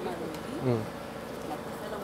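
A voice says a short "oui" over a steady, faint buzzing hum that holds one pitch throughout.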